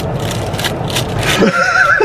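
A person's high, wavering squeal of laughter, like a whinny, starting about one and a half seconds in over a steady noisy background.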